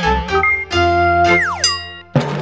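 Short channel-logo jingle: bright electronic notes held together, then a tone sliding steeply down in pitch near the end.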